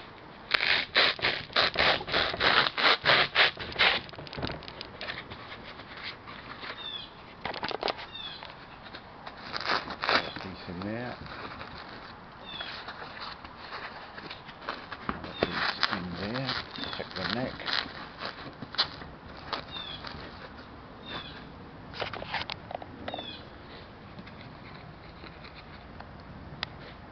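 Bubble wrap and foam packing blocks being handled and pushed into a guitar case: dense crinkling and crackling for the first few seconds, then scattered rustles and crackles.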